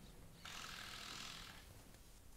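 Faint, brief rasping noise from stage set-up work, lasting about a second.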